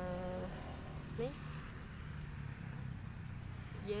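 A low, steady buzzing hum runs throughout. A few words of speech trail off at the start.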